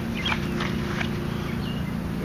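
Footsteps on grass as a person walks a few steps and crouches, with a few short high bird chirps over a steady low mechanical hum.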